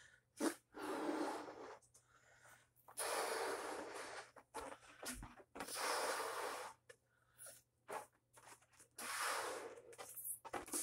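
A heart-shaped balloon being blown up by mouth: about four long breaths pushed into it, each lasting a second or more, with short pauses between them to inhale.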